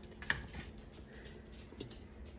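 Faint taps and clicks of frozen breaded mozzarella sticks being picked off a parchment-lined tray and set down in an air fryer basket, the sharpest click about a third of a second in.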